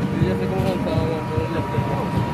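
Outdoor street ambience: indistinct voices of people nearby over a steady low rumble, with a faint, steady high-pitched hum throughout.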